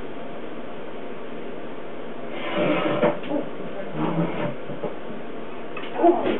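Steady hiss of room tone, then, a little over two seconds in, a short run of scraping, knocking and rustling, as of a chair being pulled out and a person sitting down at a table.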